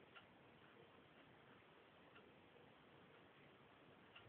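Near silence: room tone with faint, regular ticks about once a second.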